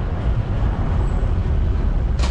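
Steady low rumble of city street traffic, cars and buses, heard from a bicycle moving along the avenue.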